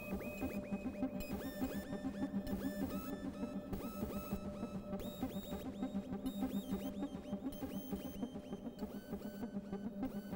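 Ambient electronic music played live on hardware synthesizers: a steady low drone, a busy pulsing low sequence, and short high bleeps that repeat and step in pitch, trailing off in delay echoes. Regular hiss-like hits run over the top.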